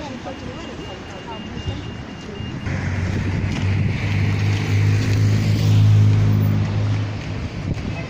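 A motor vehicle driving past on the street: its engine hum comes in about three seconds in, grows loudest a couple of seconds later, then fades away.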